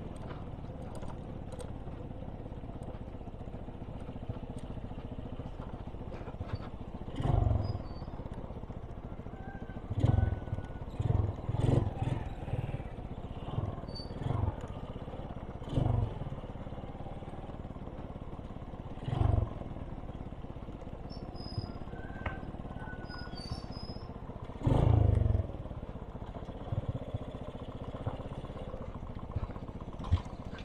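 Motorcycle engine running steadily, heard through a mic inside the rider's helmet, with road and wind noise. Several short loud thumps break through, the loudest about a quarter of the way in and near the end.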